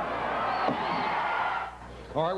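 Arena crowd cheering and yelling at a wrestling match, with single shouts rising above the noise. It cuts off shortly before the end.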